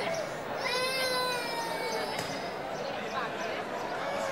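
Young child crying: one long, high, wavering wail from about half a second to two seconds in, with fainter voices behind it.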